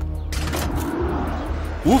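Cartoon soundtrack: background music held under a brief noisy sound effect about a third of a second in, with a voice starting near the end.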